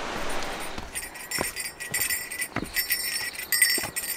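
A small bell jingling in step with a hiker's footfalls, one dull step about every second and a bit, starting about a second in.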